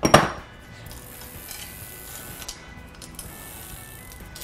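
Loose Shimano bicycle chain rattling and clinking as it is pulled free of the bike, with one loud metallic clatter just after the start and a few faint clinks after it.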